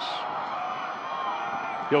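Steady stadium crowd noise at a football game, with faint distant shouts in it.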